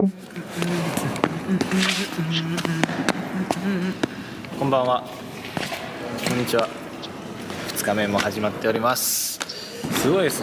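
A man speaking Japanese in short phrases, with a few small clicks in the background.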